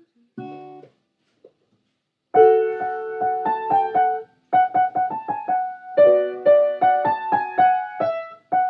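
Piano being played: a loud chord struck and held about two seconds in, then after a brief break a steady run of repeated notes and chords.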